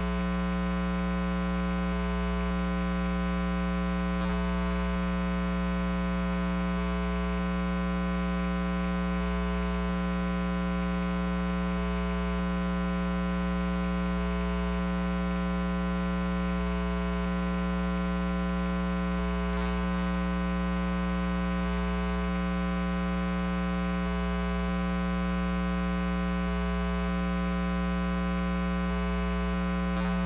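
Steady electrical mains hum with many evenly spaced overtones, unchanging throughout, and a few faint clicks.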